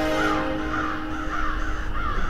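A bird calling over and over in short repeated calls, two or three a second, over the held tones of the intro music, which fade out near the end.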